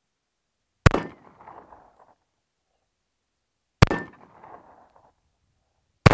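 Two .45 ACP shots from a Smith & Wesson 1911 E-Series pistol, about three seconds apart, each followed by about a second of ringing from the struck steel target; a third shot goes off right at the end.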